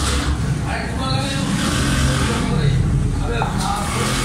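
Indistinct background voices over a steady low rumble, with a sharp knock near the end as a steel cleaver is set down on a wooden chopping block.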